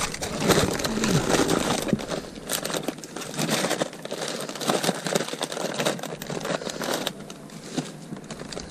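Plastic produce bags and plastic wrap crinkling and rustling as gloved hands rummage through bagged vegetables in a cardboard box, busiest in the first few seconds and lighter toward the end.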